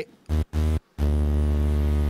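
Modal Electronics Argon8 wavetable synth holding a low, sustained pad chord played over MPE. It drops out sharply three times in the first second, then holds steady.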